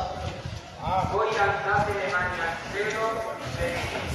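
Voices of a group in a religious procession chanting together, in drawn-out phrases.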